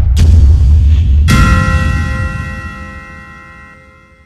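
Edited title-card sound effect: a loud, deep bass boom, then, about a second in, a sharp metallic bell-like clang whose several ringing tones fade away slowly.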